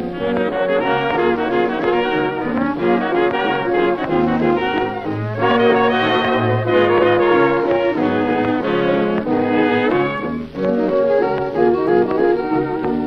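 1920s jazz dance orchestra playing a brass-led instrumental passage from a 1929 record, with no treble above the upper midrange.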